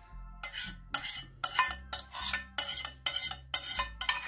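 A utensil scraping and knocking against a glass baking dish in repeated short strokes, a couple a second, starting about half a second in, as béchamel sauce is spread over broccoli.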